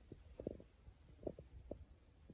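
Faint, muffled low thumps and knocks, several at irregular intervals: handling noise from a phone held against a window frame.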